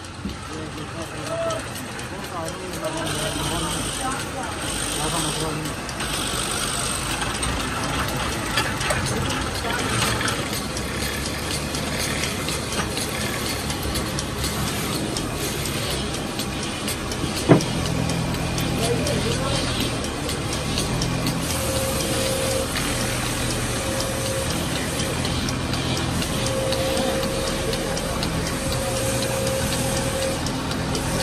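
Motor-driven wood lathe running steadily as the spinning timber workpiece is sanded by hand, with one sharp click about halfway through.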